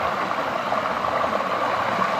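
Steady rushing of water pouring down a stepped concrete channel over its small weirs, with splashing from a child wading through it.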